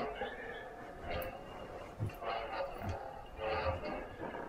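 Lightsaber soundboard (Nano-Biscotte) playing the blade's steady electric hum through the hilt's speaker. Several swing swooshes swell up and fade as the saber is swung: about a second in, between two and three seconds, and near the end.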